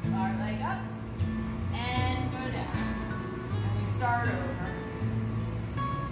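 Background music: a song with a singing voice over held low notes.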